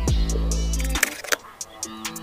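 Background electronic music with a deep held bass and sharp percussive hits. The bass drops out about halfway through.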